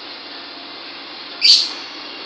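A lovebird gives one short, loud, high-pitched call about a second and a half in, over a steady background hiss.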